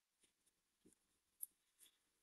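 Near silence with a few faint, short computer-mouse clicks, the clearest about one and a half seconds in.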